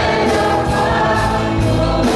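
A congregation singing a worship song together in chorus, with musical accompaniment holding steady low notes underneath.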